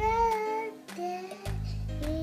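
A young child singing a couple of held notes over background music with a steady beat and low bass notes.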